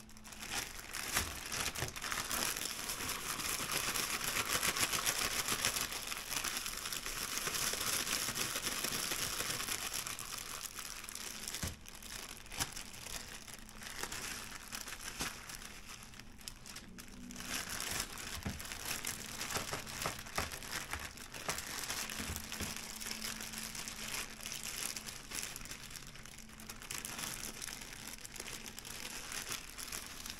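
Plastic shaker bag crinkling steadily as a pork chop is shaken inside it to coat it in seasoned breading mix. The crinkling runs in long stretches with two short pauses, about twelve and seventeen seconds in.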